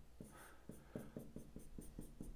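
Stylus tapping and scratching on a pen tablet while characters are handwritten: a faint run of small, irregular taps, several a second.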